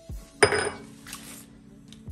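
A hard kitchen object set down on a granite countertop: one sharp clink about half a second in, ringing briefly as it dies away.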